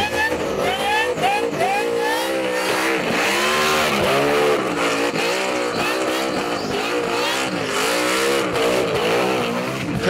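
Burnout car's engine revving hard at high rpm, its pitch swinging up and down two or three times a second as the throttle is worked, over the hiss of spinning tyres.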